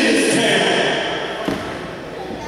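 Voices calling out, untranscribed, then a single thud from the wrestling ring about one and a half seconds in.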